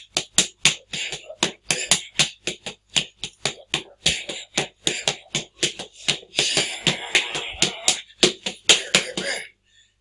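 Rapid open-hand chops striking a training partner, slapping in a fast, even run of about three to four a second, stopping shortly before the end.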